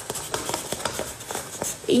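Hands handling a TheraTogs fabric garment against a stiff paper cutout of a baby: an irregular run of small clicks and rustles, quieter than the talk around it.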